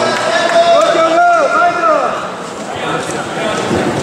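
A man's voice announcing over a public-address system in a large hall, with chatter behind it.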